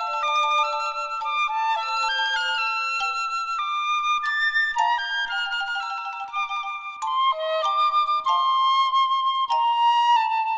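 Piccolo and xylophone duet: the piccolo plays a lyrical melody of held and moving high notes, with sharp xylophone strikes sounding beneath and between them.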